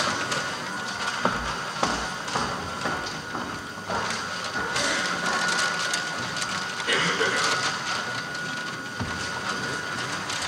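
Paper gift bags rustling and being handled amid low murmuring from a group of children, with scattered light knocks and a faint steady high tone underneath.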